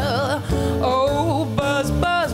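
A woman singing live with upright double bass accompaniment. She holds a note with vibrato that ends about half a second in, then sings further short phrases over the walking bass.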